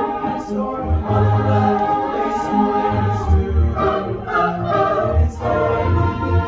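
A mixed choir singing sustained chords in harmony, accompanied by an electric keyboard playing repeated low bass notes under the voices.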